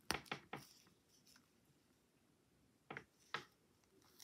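Near silence broken by a few faint, short clicks as a metal crochet hook and zipper are handled: three quick ones at the start and two more about three seconds in.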